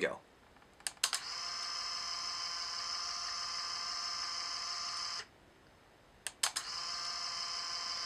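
Lomo Instant Wide instant camera: a double click of the shutter firing about a second in, then a steady motor whir for about four seconds as the camera ejects the print. Another shutter click and whir come around six and a half seconds in, the whir running on.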